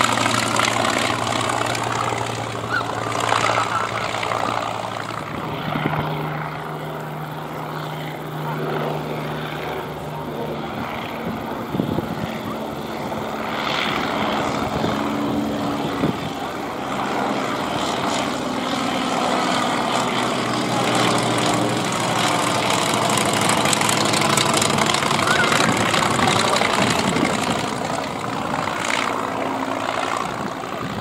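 Polikarpov Po-2 biplane's five-cylinder radial engine and propeller droning as it passes low overhead and flies away; the engine note shifts in pitch several times.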